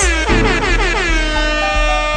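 DJ air-horn sound effect dropped over a dancehall beat, sliding down in pitch over about the first second and then holding steady.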